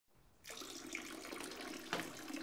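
A steady stream of urine running into a toilet bowl's water, starting about half a second in. A short knock comes near the end.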